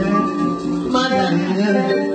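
Live band music, with guitar notes standing out over the ensemble.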